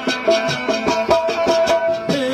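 Live instrumental folk music: a melody line holding and stepping between notes over a quick, steady percussion beat.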